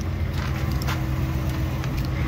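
Pickup truck engine idling, a steady low hum, with a few faint clicks.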